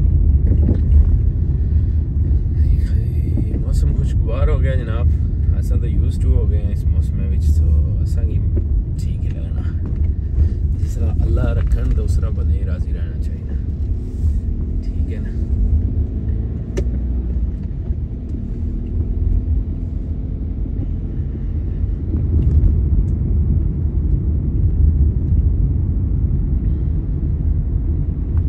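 Steady low road rumble inside a moving car's cabin, from engine and tyres on a wet road. Indistinct voices and a few clicks come through between about 3 and 13 seconds in.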